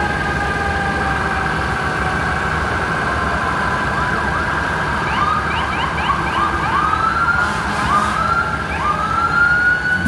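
Several sirens sounding together: steady held tones that drift slowly lower, then from about halfway short rising whoops repeat, ending in one long rising sweep near the end.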